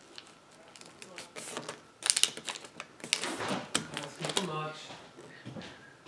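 Origami paper being folded and creased by hand against a wooden tabletop: crinkles and sharp taps, the sharpest about two seconds in.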